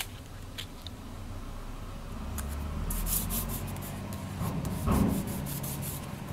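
Fingertips rubbing and smoothing a washi sticker strip onto a planner page: soft papery scraping with small clicks, and a louder rub near the end.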